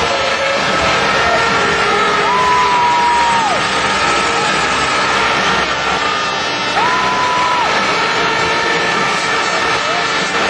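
Speedway motorcycles, 500 cc single-cylinder bikes, racing round a stadium track under loud, steady crowd noise. Two held high-pitched tones, each about a second long, sound about two seconds in and again about seven seconds in.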